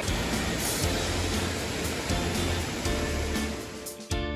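A mountain creek rushing, with a small waterfall pouring into a pool, under background music.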